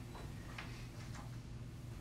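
A pause in speech: quiet room tone with a steady low hum and a few faint ticks about half a second to a second and a quarter in.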